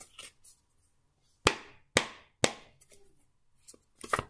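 A deck of tarot cards being shuffled by hand: a series of sharp card snaps and clicks, with three louder snaps about half a second apart in the middle.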